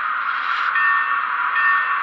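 Locomotive bell sound from an Econami DCC sound decoder in an HO scale model electric locomotive, played through its small speaker. Two strokes ring about 0.8 s apart, starting just under a second in, over a steady hum.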